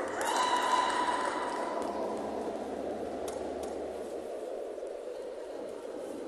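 Sports hall ambience with a steady tone that sets in just after the start and fades away over about three seconds, and two light clicks near the middle.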